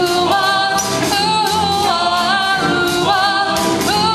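Live doo-wop band music: several voices singing over upright bass, electric guitar and drums, with a steady beat.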